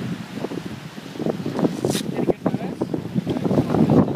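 Wind buffeting the microphone, with low voices in the background and a short hiss about halfway through.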